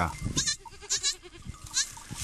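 A mother goat and her newborn kid bleating, several short calls, some high-pitched and one lower and pulsing.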